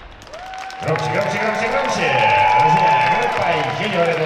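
A brief lull, then a man announcing over the public-address system with long drawn-out words, over audience applause.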